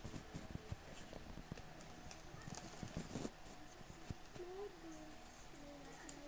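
Faint, irregular knocks of tools striking stone, from news footage of an ancient relief being smashed playing on a computer. About four seconds in the knocking gives way to a wavering voice.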